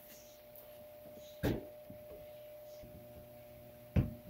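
Broom handle knocking against the ceiling: one knock about a second and a half in and another right at the end, over a faint steady hum.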